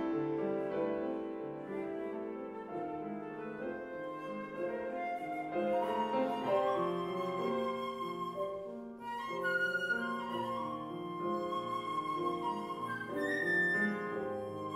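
Concert flute and grand piano playing an improvised duet, the flute holding long notes over piano chords and climbing higher in the second half.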